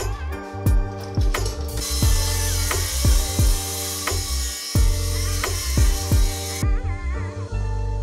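Background music with a steady beat and bass throughout. About two seconds in, a Bosch circular saw cutting aluminium sheet adds a loud, high-pitched cutting noise over the music for about five seconds, then stops suddenly.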